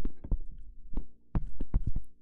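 Plastic stylus tip tapping and knocking on a tablet screen while handwriting digits and underlining them: about ten sharp taps in two quick clusters, over a faint steady hum.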